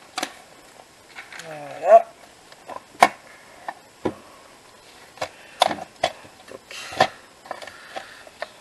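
A plastic paper trimmer and sheets of cardstock being handled on a cutting mat: a run of sharp knocks and clicks as the trimmer is set down and the paper is moved, with soft paper rustling between them. Near 2 seconds a short rising voice-like sound is heard.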